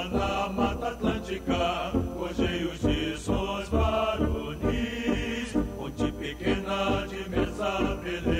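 An anthem played for a standing assembly: a choir singing with orchestral and brass accompaniment.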